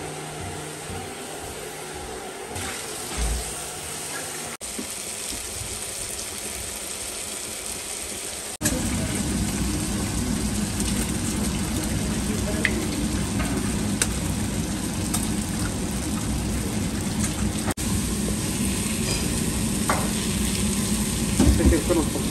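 Food sizzling as it fries in a pan, a steady hiss that jumps abruptly twice and is louder after the second jump, about eight and a half seconds in.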